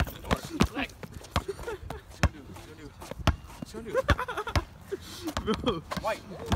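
Basketball dribbled on asphalt: sharp bounces at uneven intervals, with voices calling out between them.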